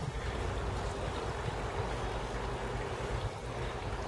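Steady rush of running water from a garden pond, an even hiss with no rhythm.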